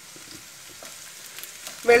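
Garlic cloves and green chillies frying in oil in a kadai, a faint steady sizzle, with a wooden spatula stirring and scraping through them.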